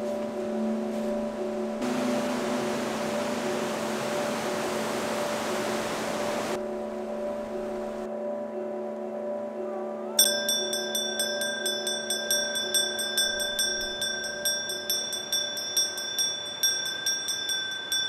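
A small brass bell hanging on a chain, rung over and over by hand from about ten seconds in, with quick repeated strikes that each ring on in bright high tones. Beneath it, a steady low drone of sustained tones runs throughout.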